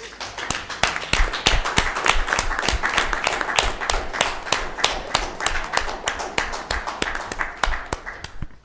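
A small group of people clapping, starting at once and dying away near the end.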